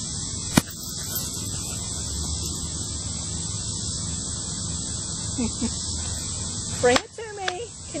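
Steady high-pitched insect chorus with low rumbling noise underneath. A sharp click comes about half a second in, and a few short voice sounds come near the end.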